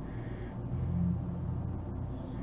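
A person breathing out through the nose, a short airy breath near the start, over a low steady hum that swells around the middle.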